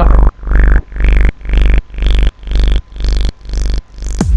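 Build-up of an electronic drum and bass remix: a chopped, pulsing sound repeating about twice a second over heavy bass, its brightness rising steadily, leading into the drop.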